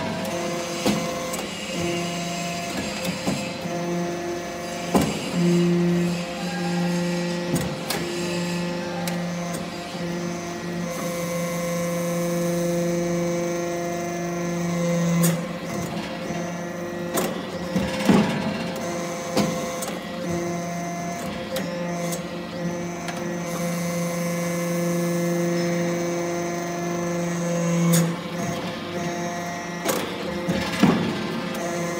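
Hydraulic scrap-metal chip briquetting press running: a steady hydraulic pump hum that grows stronger through two long pressing strokes of about ten seconds each. Sharp metallic knocks mark the start and end of each stroke.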